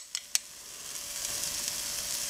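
Chickpea-flour omelet frying in grapeseed oil in a nonstick pan: a steady sizzle that slowly grows louder. Two light clicks of a metal spoon near the start.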